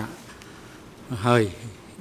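Speech only: a man speaks one short phrase a little after a second in, with quiet room tone around it.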